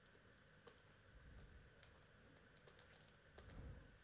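Near silence: faint room tone with scattered soft clicks from computer input during drawing, and a brief low thump near the end.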